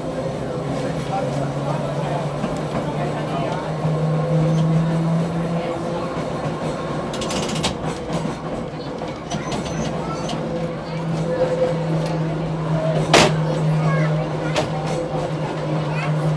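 A 1926 Brill interurban trolley car running on the rails, its electric traction motors and gears humming steadily. The pitch shifts from time to time as the car changes speed. A short run of clicks comes about halfway through, and a single sharp knock near the end.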